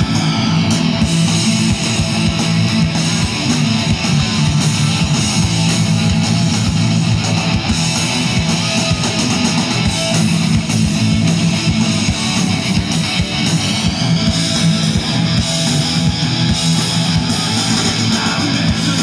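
Live punk-ska band playing an instrumental passage, loud and steady: electric guitar and electric bass over a drum kit, amplified through a PA.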